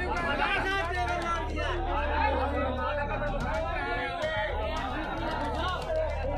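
Crowd of men talking over one another in a packed queue, a continuous babble of overlapping voices with no single clear speaker, over a steady low hum.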